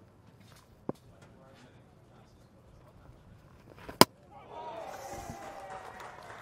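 A single sharp crack about four seconds in as the cricket ball beats the batsman's defence and hits the stumps, bowling him. Shouting and cheering from the fielders and crowd rise just after it.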